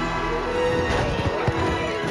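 Dramatic film music with long held notes, mixed with battle sound effects of horses, and a few sharp thuds in the middle.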